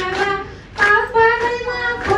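A woman singing solo into a microphone, unaccompanied, holding long, drawn-out notes, with a short breath pause a little before the middle.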